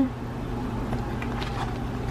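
A steady low hum, with faint rustling and light ticks as binder pages and plastic tab dividers are handled.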